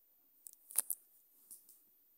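About half a dozen faint, short clicks and taps, the loudest a little under a second in: a finger tapping and handling a smartphone's touchscreen.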